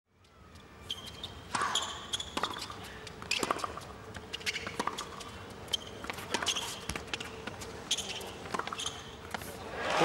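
Tennis rally on a hard court: a run of sharp racquet hits and ball bounces about a second apart, with short high squeaks of shoes on the court between them. Crowd applause swells in right at the end as the point finishes.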